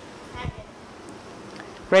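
Room tone of a lecture hall: a steady low hiss, with a brief murmured voice about half a second in and a man saying "right" at the end.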